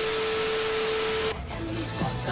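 Television static hiss with a steady test tone over it, cutting off suddenly about 1.3 seconds in, where music takes over.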